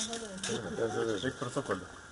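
Men talking at close range in low, indistinct voices.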